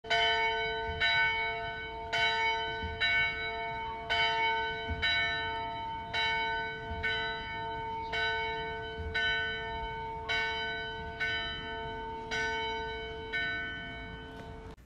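A single church bell tolling about once a second, each strike ringing on into the next.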